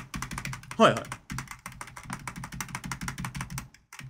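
Rapid computer-keyboard typing, a fast run of keystroke clicks that stops shortly before the end.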